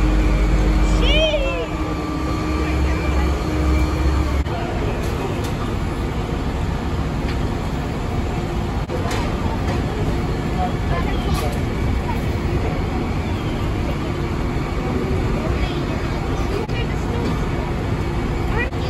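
Fire truck's diesel engine running steadily close by, with a low hum that shifts and drops out in the first few seconds. Voices can be heard in the background.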